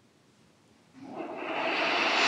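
A long audible breath close to the microphone, starting about a second in and swelling steadily louder.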